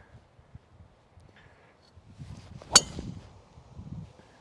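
Srixon ZX5 Mk II driver striking a golf ball off the tee: one sharp crack about three-quarters of the way through. The ball is caught slightly off the toe.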